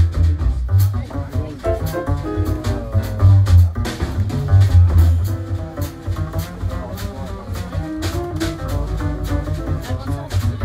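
Live jazz: an upright double bass plucking a prominent, changing bass line, with a drum kit keeping time on cymbals and drums and other pitched instruments in the mid range.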